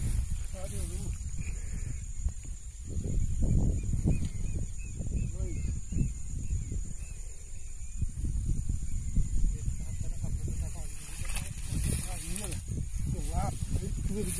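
Wind buffeting the microphone as an uneven low rumble. Faint voices come in briefly near the start and again near the end.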